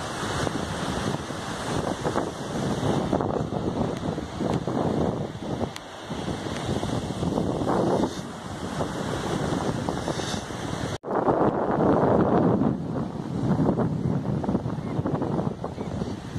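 Wind buffeting the phone's microphone over the wash of surf breaking on a sandy beach. The sound cuts out for a split second about eleven seconds in and comes back louder.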